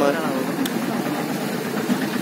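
Fast-flowing floodwater of a swollen river rushing steadily, a continuous even rush, with a short click a little over half a second in.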